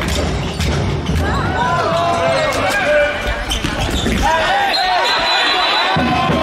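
Indoor handball play in a sports hall: athletic shoes squeaking in short chirps on the court floor, the ball and players thudding, and players shouting. Near the end a long thin high whistle sounds as the referee stops play.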